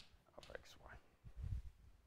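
Faint, quiet room: a few short chalk strokes on a blackboard, then soft low footsteps on the floor about one and a half seconds in.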